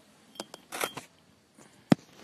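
Handling noise from a hand-held smartphone: a few light taps and rubs on the phone's body, then one sharp, loud knock near the end.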